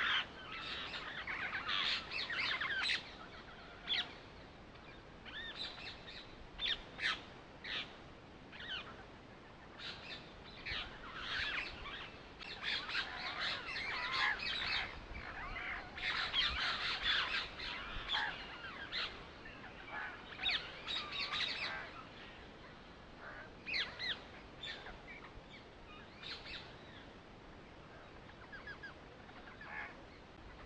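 Birds chirping and calling in many short, quick calls, busiest in the middle and thinning out toward the end.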